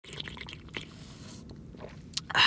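A person sipping coffee from a paper takeaway cup: a few soft wet clicks and slurps, with a brief soft hiss about a second in.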